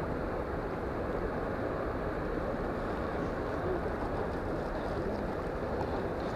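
Steady rush of a fast, rocky river flowing over stones.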